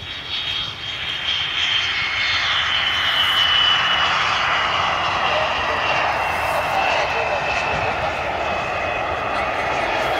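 Saab Draken jet fighter's turbojet engine running as the aircraft rolls along the runway: a loud roar that builds over the first couple of seconds and then holds steady, with a high turbine whine slowly falling in pitch.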